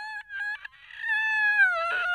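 A high-pitched, sped-up voice letting out a cry: a short note, a few quick broken notes, then one long wail that sags slightly and rises again at the end.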